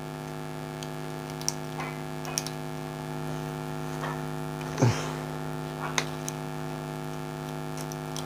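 A steady electrical mains hum, several even tones held without change. Over it are a few faint ticks and rustles of copper winding wire being pulled through and pressed into the stator slots, with a louder brushing sound about five seconds in.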